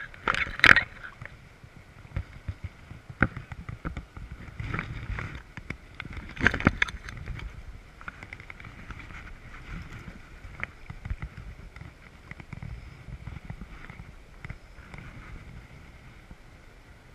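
Shallow river water splashing and sloshing around a wading angler's legs and hands, with a few louder splashes near the start and about six and a half seconds in, over the steady rush of flowing water.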